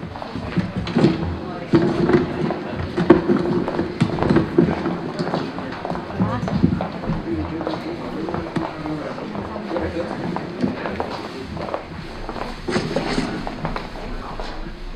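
Indistinct talk among a group of people, with footsteps and knocks of shoes on a hard floor as a choir walks up and takes its places; brief laughter near the start.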